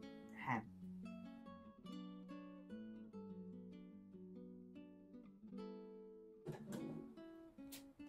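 Quiet background music: plucked acoustic guitar playing a slow run of single notes.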